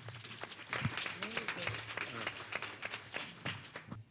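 Audience applauding, a dense patter of many hands clapping, which stops suddenly near the end.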